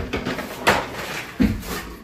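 Knocks and clatter of things being handled, with a rustle underneath. Two sharper knocks come about two-thirds of a second in and again near a second and a half.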